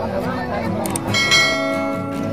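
A mouse-click sound effect, then a bright bell chime that rings on for most of a second. This is the stock sound of a subscribe-button and notification-bell animation, heard over the chatter of a crowd.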